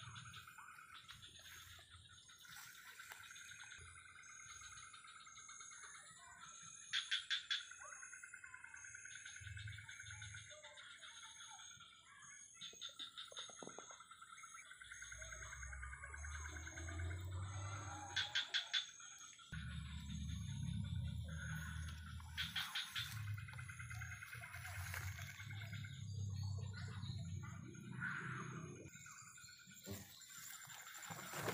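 Rainforest insect and frog chorus at dusk: several steady high buzzing tones, with a louder pulsed trill breaking in every few seconds. From about halfway, low rustling and thudding of footsteps pushing through undergrowth.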